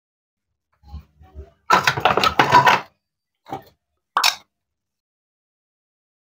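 Wooden toy play-food pieces being handled and set down: a couple of light knocks, then about a second of dense rattling clatter, then two short sharp clicks.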